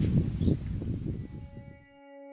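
Outdoor wind buffeting the microphone as a low, gusty rumble that fades out about a second and a half in. Soft, sustained ambient music tones fade in near the end.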